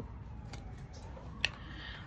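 A deck of tarot cards being handled, with one sharp click about one and a half seconds in as a card is drawn.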